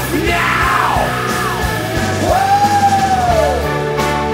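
AI-generated rock song with a yelled vocal over a steady beat: a rising cry about half a second in, then a long held note that falls away shortly before the end.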